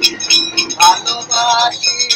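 A man singing a sad Bengali baul song in short wavering phrases, accompanying himself on a plucked long-necked folk lute whose sharp string strikes sound between and under the voice.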